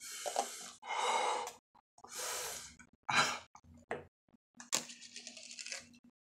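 A man breathing hard through his mouth in about five separate hissing breaths, each less than a second long, as his mouth burns from very hot chicken wings.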